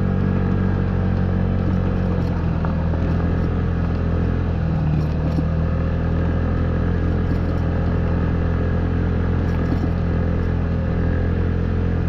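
Honda Ruckus scooter's 49 cc four-stroke single-cylinder engine running at a steady cruise on a dirt logging road, with light clattering and rattling from the bike over the rough surface.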